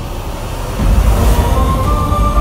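Dramatic background score: a deep rumbling drone that swells up with a whoosh, then a high held note comes in about a second and a half in.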